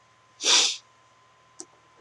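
A single short, sharp burst of breath from a man, about half a second in, followed by a faint click.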